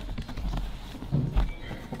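Hands digging through loose wood shavings in a plastic tub: soft scratching and rustling with a few light knocks.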